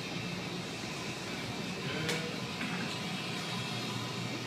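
Steady hiss of a glassblower's gas burner over a low hum, with faint music in the background and a light click about halfway through.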